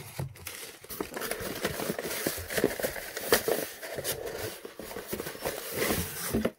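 Crumpled newspaper packing rustling and crinkling as small cardboard boxes are lifted out of a cardboard shipping box, with many light knocks and scrapes of cardboard throughout.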